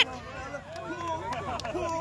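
Faint background chatter of several voices from onlookers, with no close speech.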